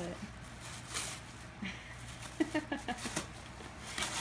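Tissue wrapping paper rustling and tearing as a dog rips open a present with its mouth. A person's short burst of laughter comes in about two and a half seconds in.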